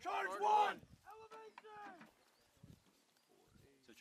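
Men shouting commands in loud, drawn-out calls in the first two seconds, then only faint handling noise.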